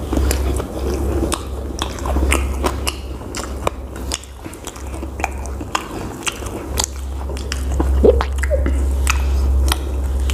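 A person chewing and biting food into a close lapel microphone: a dense run of sharp, wet mouth clicks and smacks, with a low rumble coming and going beneath.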